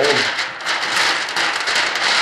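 Clear plastic tube film crinkling and crackling continuously as it is folded by hand and stood straight up into a 90-degree bend.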